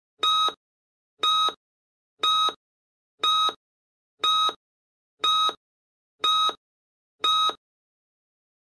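Countdown timer sound effect: a short, identical beep once a second, eight times, as the answer time runs out.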